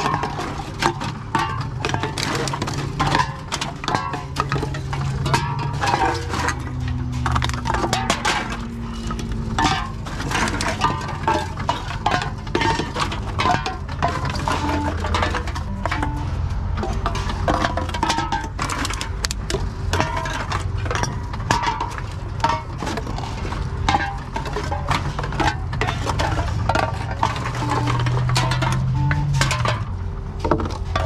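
Aluminium drink cans and plastic bottles are fed one after another into a TOMRA reverse vending machine. They make frequent irregular clinks and clatters over the machine's steady low motor hum.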